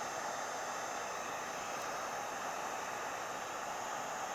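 Wagner HT1000 1,200-watt heat gun running, its fan blowing a steady rush of hot air onto the painted hull planking to soften the paint.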